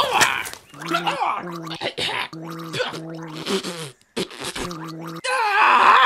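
A man's voice for a cartoon raccoon gagging and gargling in short spells, as if choking on a mouthful of dung, with brief pauses between; laughter breaks in near the end.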